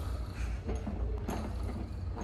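Hand crank of a small wooden barrel butter churn being turned, with a few faint mechanical clicks.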